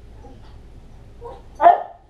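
A dog giving a soft yip and then one short, loud bark near the end.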